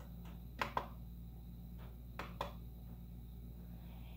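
A few faint sharp clicks from the Original Prusa MK3S+ LCD control knob being turned and pressed to step through the menu, two close together about half a second in and more around two seconds in, over a low steady hum.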